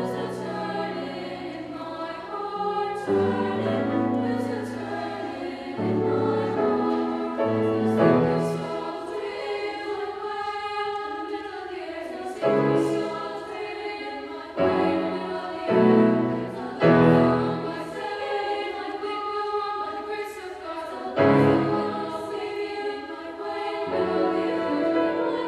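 A high school choir singing with grand piano accompaniment, with several louder accented chords during the passage.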